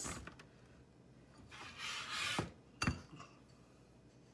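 Bottom of a drinking glass rubbed in granulated sugar on a plate, a gritty scrape lasting under a second, followed by two sharp knocks of the glass against the plate about half a second apart.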